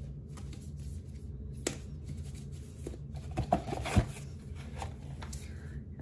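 Eyeshadow palettes being handled and fitted back into their box: soft rustling and sliding with a few sharp clacks, the loudest about four seconds in.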